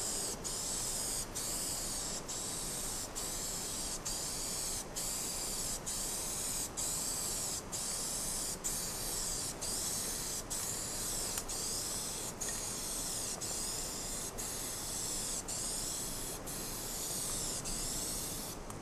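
Aerosol spray-paint can spraying onto the side of a steel freight car, a loud high hiss that runs almost without pause, broken by short gaps about once a second between strokes.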